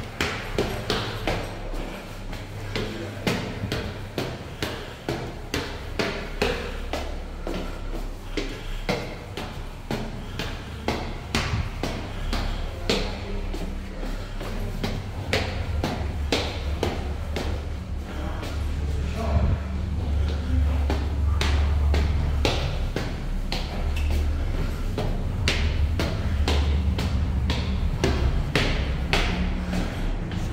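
Footsteps climbing stone stairs, about two steps a second, with a low rumble that grows louder about halfway through.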